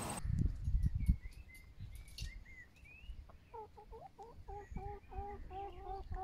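Domestic hen clucking: a fast run of short, pitched clucks, about four a second, starting about halfway in. Faint high bird chirps come before it.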